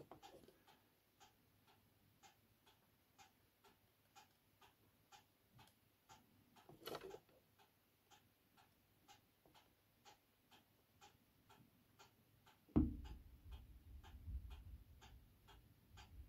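A clock ticking faintly and steadily, about two ticks a second. About thirteen seconds in comes a sudden low thump, followed by a few seconds of low rumbling handling noise.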